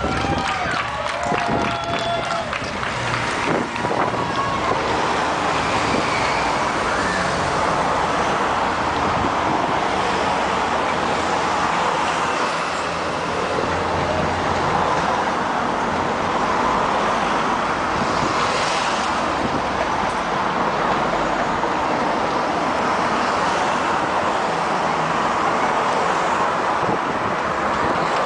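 Race convoy cars and motorbikes passing one after another close by along a street, over a steady din of roadside spectators' voices.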